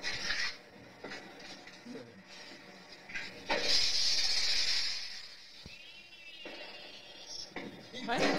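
A firework shooting off with a hissing whoosh lasting about a second and a half, near the middle, heard through the playback of a phone video.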